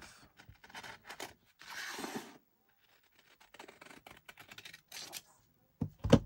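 Scissors cutting a curve through fabric glued to a paper backing: a series of short snips with pauses between them. There is a sharp knock near the end.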